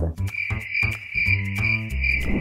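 Cricket chirping sound effect, a steady high pulsing chirp, over faint background music: the 'crickets' gag standing for an awkward silence, no response at all.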